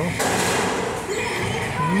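Slot machine's electronic win effects: a sudden bright whooshing burst at the start, then jingle tones, as a bonus round ends and pays out a small win of about 7 euros — a racket for the size of the win.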